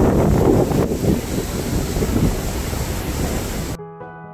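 Wind buffeting a phone's microphone over ocean surf on a beach, a loud, gusty rush. Just before the end it cuts off abruptly to soft piano music.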